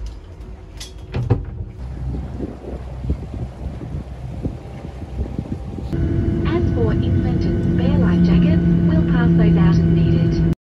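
Jet airliner cabin noise while taxiing: a steady engine drone with a low hum that gets louder about halfway through, a second held tone joining later, and voices in the cabin. Before that, knocks and handling bumps over a lower rumble.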